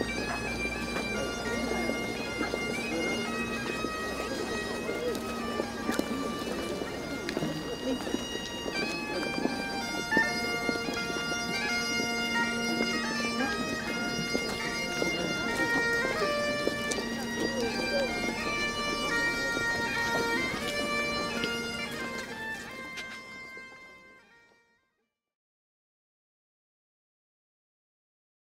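Bagpipes playing a tune over their steady drones, fading out near the end.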